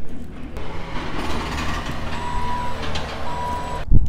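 A vehicle's reversing alarm beeping twice, a steady tone of about half a second each, over a low engine rumble. A loud thump comes just before the end.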